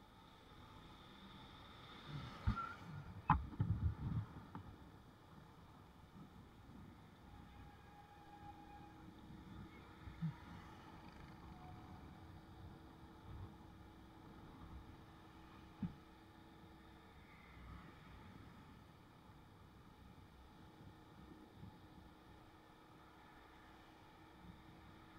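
Faint running noise of a motorbike riding along a paved road, with a cluster of knocks and thumps about two to four seconds in, and a few single knocks later.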